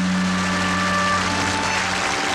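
A band plays the instrumental introduction of a ballad: a held low chord under a few long higher notes that step downward. There is no singing.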